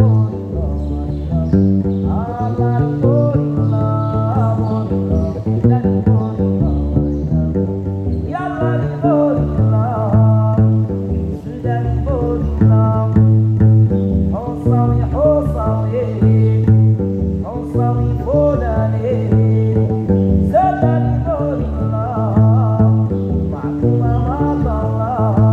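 Solo Moroccan long-necked lute with a skin-covered body, plucked in a repeating low riff with higher melodic phrases returning every few seconds.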